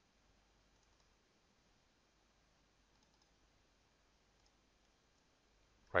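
A few faint computer mouse clicks over near-quiet room tone.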